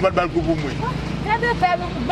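People talking in conversation, over a steady low background rumble.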